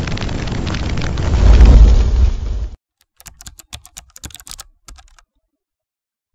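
A swelling whoosh that builds into a deep, loud boom and cuts off abruptly a little under three seconds in. It is followed by about two seconds of rapid computer-keyboard typing clicks.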